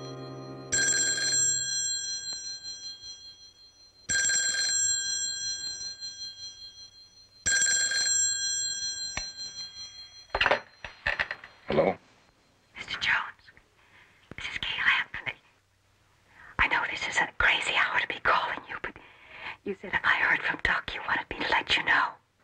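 A telephone bell rings three times, about three and a half seconds apart, each ring fading away. It is followed from about ten seconds in by a hushed, whispered voice.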